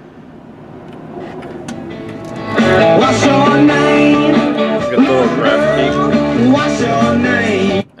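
Music, a song with singing, playing from a 2002 Chrysler Sebring's factory AM/FM/CD radio tuned to an FM station. It starts quiet and grows louder, turns much louder about two and a half seconds in, and cuts off suddenly just before the end as the radio is switched off.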